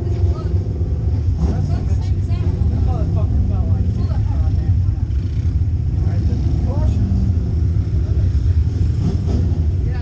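Pure stock dirt-track race car's engine idling steadily, with indistinct voices talking over it.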